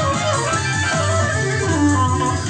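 Soprano saxophone improvising over keyboard accompaniment: a moving melodic line over a steady bass.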